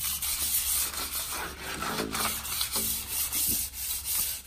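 Sandpaper rubbed by hand over a six-inch PVC pipe in repeated back-and-forth strokes, scuffing the plastic surface so that spray paint will stick.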